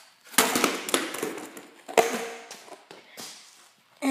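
Two hard knocks about a second and a half apart, each trailing off in a short clatter, with a few lighter taps between.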